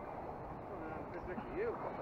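Steady rushing of shallow river water, with a faint man's voice in the second half.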